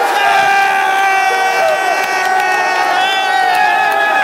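Football crowd cheering a goal, with fans right at the phone yelling in long, held shouts that slide down in pitch, over the roar of the stand.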